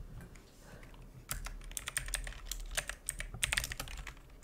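Typing on a computer keyboard: a quick, irregular run of keystrokes starting about a second in, as a short word is typed.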